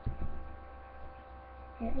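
Steady low electrical mains hum, with a soft thud at the start and a voice beginning near the end.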